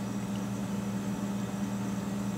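Steady low hum with an even hiss of room background noise, no distinct events.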